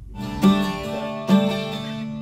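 Twelve-string acoustic guitar: two chords are struck about a second apart, and each is left ringing.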